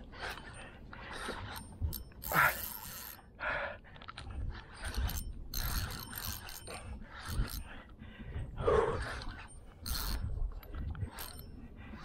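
Spinning fishing reel under load from a hooked crevalle jack, its gears and drag clicking in irregular short bursts as line is worked.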